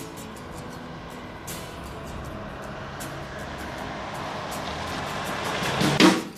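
A road vehicle approaching, its noise swelling steadily and reaching its loudest at the very end, over quiet background music.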